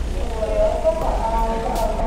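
Voices of passengers talking as they crowd off a train, over a steady low rumble.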